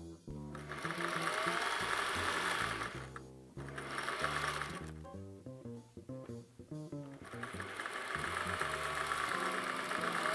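Electric sewing machine stitching a zipper onto fabric, running in spurts: a run starting about half a second in, a shorter lighter one around the middle, and a longer run from about seven seconds on.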